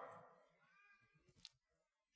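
Near silence: a pause in a spoken sermon, the last word fading out at the start, with one faint click about one and a half seconds in.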